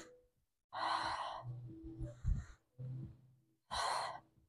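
A woman breathing hard with effort during crunch-style reaches: a loud breath out about a second in and another near the end, with fainter breathing between.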